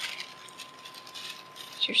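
Thin paper toilet seat cover rustling softly as it is unfolded by hand.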